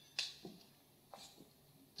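A single sharp click about a fifth of a second in, followed by a couple of much fainter ticks, in an otherwise quiet room.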